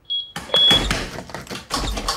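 A short high electronic beep from the smart-home locking system, then loud mechanical clunking and rattling as the front door's lock engages and its handle is yanked against it.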